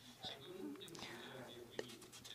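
Faint speech in the background, much quieter than the main voice, with a single click near the end.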